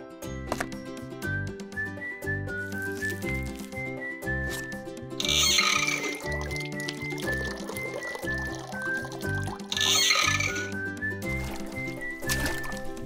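Background music with a repeating bass line and melody. Twice, about five seconds in and again about ten seconds in, water runs briefly from a miniature kitchen tap into the sink, each time for about a second.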